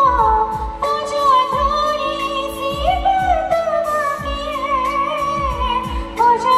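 A woman sings a romantic song live into a handheld microphone, her melody gliding and ornamented. A backing band plays under her, with held chords and repeated low drum beats.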